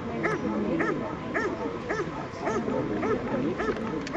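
German Shepherd dog giving short, high yips and whines over and over, about two a second.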